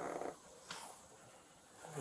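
Mostly quiet room tone with a short faint sound at the start and a soft tick just under a second in.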